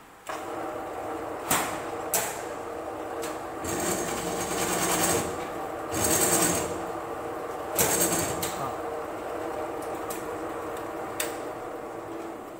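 A bench drill press starts up and runs with a steady motor hum. Its rotating cutter is fed down into a steel workpiece held in a machine vice, cutting in three short, harsher bursts about four, six and eight seconds in. A few sharp clicks come from the machine and vice along the way.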